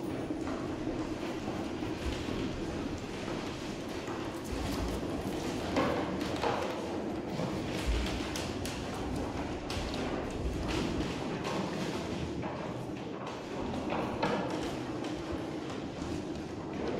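Heavy wheeled partitions being pushed across a hard floor: a steady rolling rumble, with footsteps and a few knocks and thuds.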